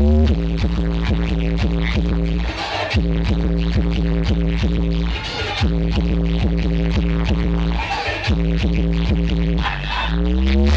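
Loud electronic dance music from a DJ sound system: heavy sustained bass under a steady beat and held synth notes. There is a rising sweep at the start, and the bass drops out briefly about every two and a half seconds.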